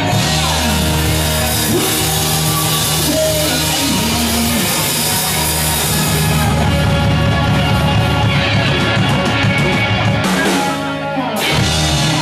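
A live rock band with guitar, bass and drum kit playing loud, holding one long low chord for most of the time, then striking a final hit about a second before the end: the close of a song.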